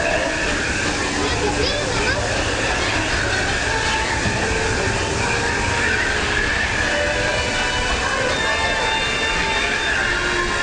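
Disneyland Railroad steam-train passenger car rolling steadily along the track, a continuous rumble and rattle heard from aboard, with faint steady tones above it.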